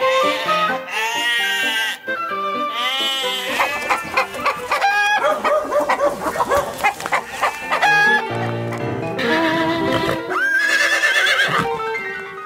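Theme music for a podcast intro, with arching, wavering animal-like calls mixed into it near the start and again near the end.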